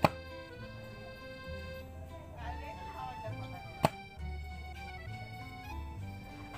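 Background music with a steady beat, over which two sharp knocks sound, one at the very start and one nearly four seconds in: a bamboo pole ramming the earth packed around the pipe of a newly fitted hand-pump tube well.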